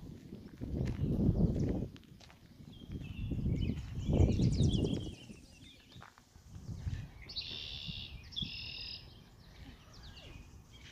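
Songbirds singing around a pond, with high chirps throughout and two louder trilled phrases near the end. Three bursts of low rumble from wind on the microphone are the loudest sound, about half a second in, around four seconds in, and around seven seconds in.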